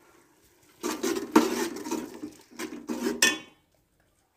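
Metal ladle stirring and scraping a thick tomato-onion masala around an aluminium pot, with a few sharp clinks against the pot. It starts about a second in and stops shortly before the end.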